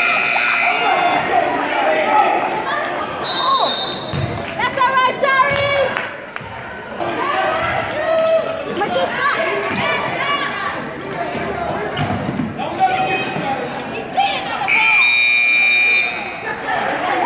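Basketball game sounds in a gym: spectators shouting and calling out, the ball being dribbled, and sneakers squeaking on the hardwood floor. A short high whistle about three seconds in and a longer, loud one near the end as play stops during a scramble for a loose ball.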